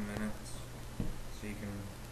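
Acoustic guitar playing a repeated low riff of single plucked notes, with a sharp string attack about a second in.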